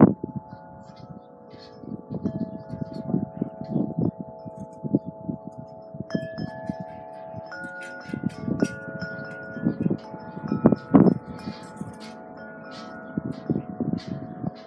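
Wind chime ringing, its notes struck at irregular moments and ringing on over one another, with an uneven low rumble underneath.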